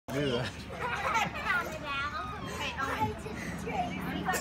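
Children's voices talking and calling out, high-pitched and overlapping at times, as kids play at the edge of a pool.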